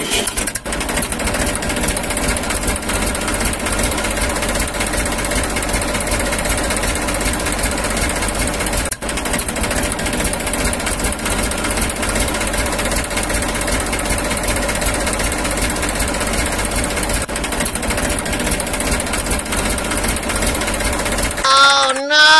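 A motor running steadily with a fast, even rattle, dropping out briefly about nine seconds in.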